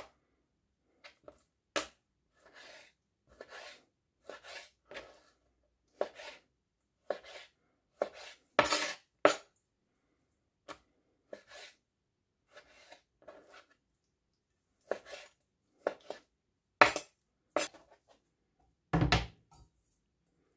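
Kitchen knife cutting pork loin into cubes on a plastic cutting board: irregular short strokes of the blade tapping the board, a few louder than the rest. A heavier knock near the end.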